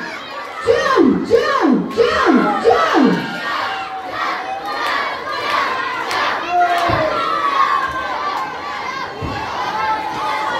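Wrestling crowd with many children shouting and cheering. In the first three seconds comes a quick run of five loud shouts, each falling in pitch, then a dense mix of many voices.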